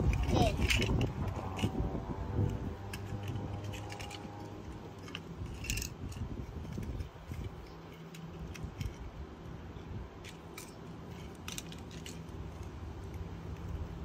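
Small die-cast toy cars set down on asphalt and nudged into a row, making scattered light clicks and scrapes as they touch the pavement and each other.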